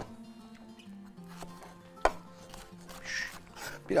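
Soft background music with a slow, low melody. A single sharp knock comes about two seconds in, and a short hiss follows near three seconds.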